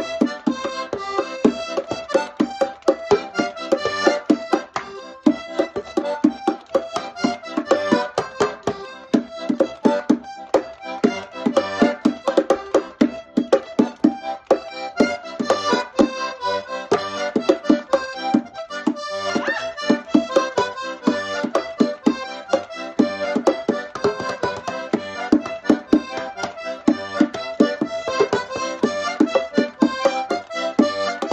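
Button accordion playing a polka tune, accompanied by a steady beat of hand strikes on a wooden box drum.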